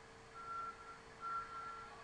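Faint electronic beeping at one steady pitch: three beeps of uneven length, the longer ones under a second, over a low steady hum.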